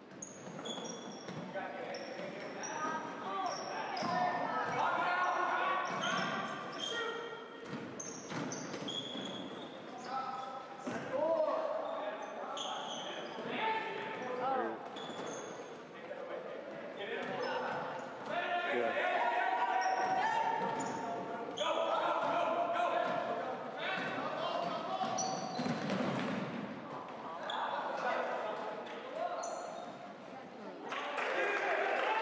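Indoor basketball game: the ball bouncing on a hardwood court amid sneaker squeaks, with players and spectators calling and talking throughout, all echoing in the gym.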